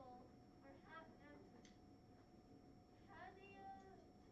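Near silence: faint, distant children's voices in a classroom over low room tone, with a steady faint high-pitched whine.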